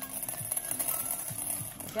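Small hard candies poured from a packet into a clear glass bowl, clattering and tinkling against the glass in a quick continuous rattle that starts suddenly.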